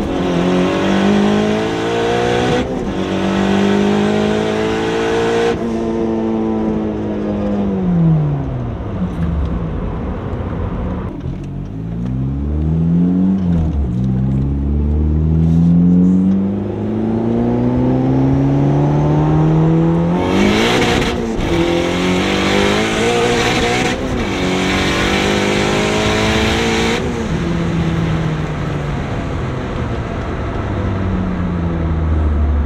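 Turbocharged Honda Civic Si's 2.4-litre four-cylinder engine under hard acceleration, heard inside the cabin. The first pull has one upshift; then the revs fall away for a few seconds; then a longer pull climbs through three more upshifts.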